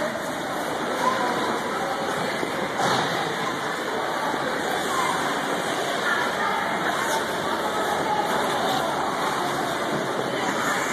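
Indoor ice rink hubbub: indistinct echoing voices over a steady rushing noise.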